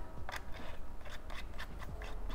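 Small, irregular clicks and light rubbing as a screw-on antenna is twisted by hand onto the DJI FPV Goggles V2 headset, a few ticks every half second.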